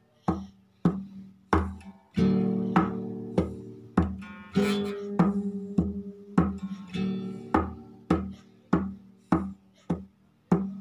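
Acoustic guitar played in a steady rhythm, a plucked note or chord roughly every 0.6 s, each left to ring, with two fuller strummed chords about two and four and a half seconds in.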